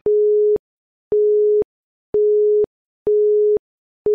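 Quiz countdown timer beeping: four identical steady electronic beeps of one low pitch, each about half a second long, one a second, with a small click as each one starts and stops.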